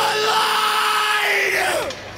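A long held shouted vocal note from the soundtrack song over sparse backing with no bass, its pitch sagging near the end.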